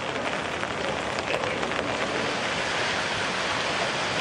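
Steady hiss of rain falling on floodwater.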